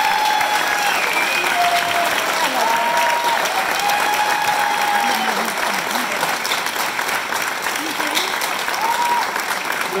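Audience applauding steadily after a choir performance, with several held shouted cheers rising above the clapping.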